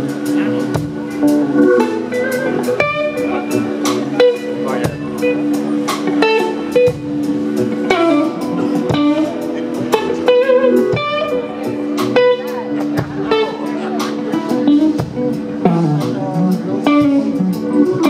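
A live blues band playing an instrumental passage, with an electric guitar playing short melodic lead phrases over steady held notes and regular drum hits.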